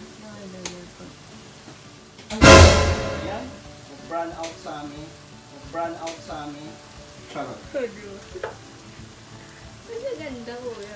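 Garlic frying in oil in a wok, with a sudden loud burst of sizzling about two and a half seconds in that dies away within a second.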